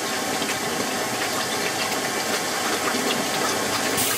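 CNC plasma torch cutting steel plate on a water table, the arc at the water's surface: a steady hiss with faint crackling throughout.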